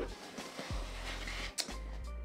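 Soft background music, with faint rustling from a cardboard gift box and its ribbon being handled and untied, and one brief click about one and a half seconds in.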